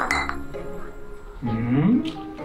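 A single sharp clink of glass at the start over steady background music. Near the end comes a short low vocal sound that dips and then rises in pitch.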